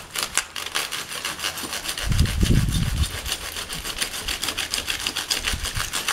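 Hand pruning saw cutting through the fibrous seed stalk of a Trachycarpus palm, in rapid, even back-and-forth strokes. A brief low rumble comes about two seconds in.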